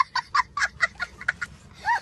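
A young child laughing hard in quick short bursts, about four a second. It eases off in the middle and picks up again near the end.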